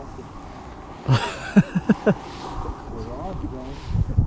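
A man laughing in four or five short bursts about a second in, followed by faint, indistinct talk.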